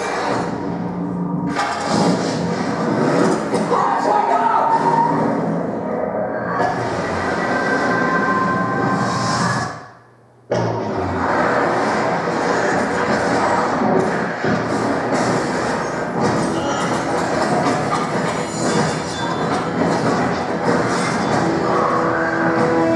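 Film soundtrack played through room loudspeakers: music and sound effects that drop out suddenly for about half a second near the middle, then carry on.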